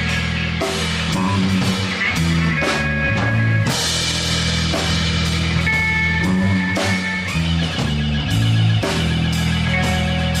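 Live rock band playing with bass guitar, electric guitar and drum kit. A cymbal crash comes about four seconds in.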